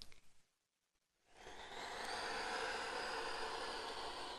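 Piano accordion bellows being pulled open, air drawn in through the instrument with a steady soft hiss that starts about a second and a half in.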